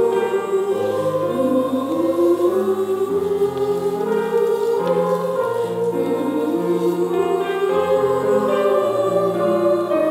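Choir singing in several parts, holding long chords that move every second or so, with low voices underneath.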